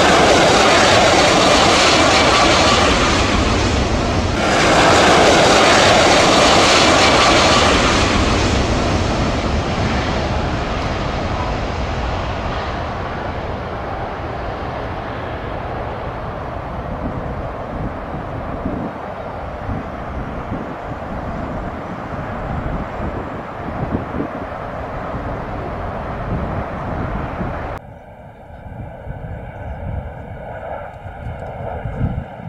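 Jet airliner engines passing close on landing approach: a loud, steady rush of engine noise that fades slowly over about twenty seconds as the plane goes by and lands. Near the end the sound cuts suddenly to a quieter, more distant jet engine whine with steady tones.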